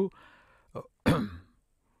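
A man clears his throat with a short cough about a second in, after a brief hesitant 'uh'.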